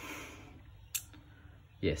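A pause in a man's talk, with a single sharp click about a second in; he starts speaking again near the end.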